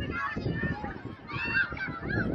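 High-pitched shouts and calls from several voices at an outdoor girls' soccer match, with a loud rising-and-falling call about a second and a half in.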